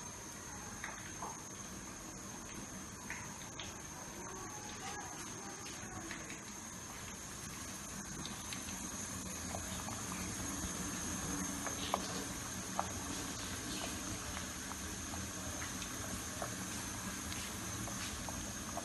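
Food cooking in pots on a gas stove: a steady hiss with scattered small pops and ticks of bubbling and sizzling, growing a little louder about halfway through.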